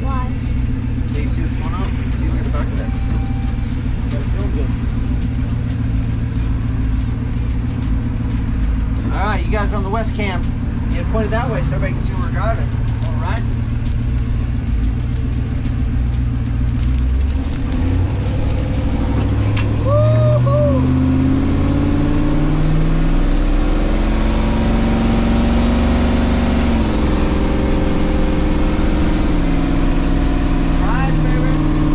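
Turbocharged LS V8 of a Winnebago motorhome heard from inside the cab while driving: a steady engine drone, then accelerating in the last third, its pitch climbing and dropping at a gear change near the end.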